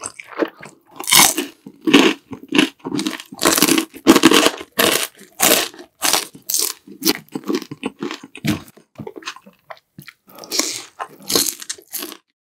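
Close-up crunching and chewing of crispy deep-fried battered pork (tangsuyuk): a dense, irregular series of loud crisp crunches mixed with wet chewing.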